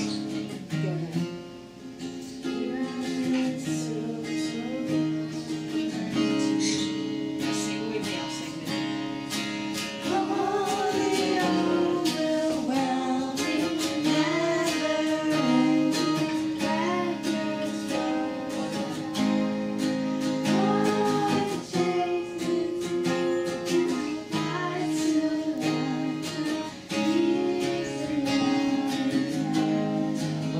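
Acoustic guitar strummed in a steady rhythm, accompanying a voice singing a worship song; the playing gets louder about ten seconds in.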